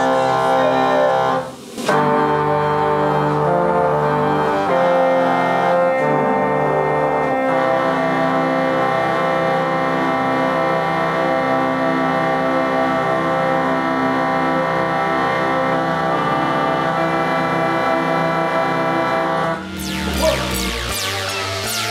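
Church pipe organ sounding held chords with deep pedal bass, changing chord a few times in the first seconds after a short break, then one long chord held until it stops at the end. The organ still lacks its keyboards and has yet to be tuned.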